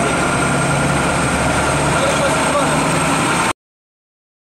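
A vehicle engine idling with a steady low hum, with people talking under it; the sound cuts off abruptly about three and a half seconds in.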